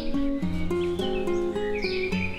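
Acoustic guitar music of plucked notes changing about every half second, with birds chirping over it in short falling calls near the start and again near the end.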